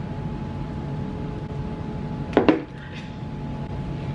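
Steady low room hum, broken about two and a half seconds in by one short, loud vocal sound from a person.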